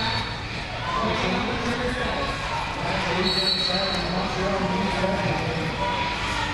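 Sports-hall ambience during a roller derby jam: skate wheels rolling and knocking on the hard floor, with background voices echoing through the large hall. A short, steady high tone sounds a bit over three seconds in.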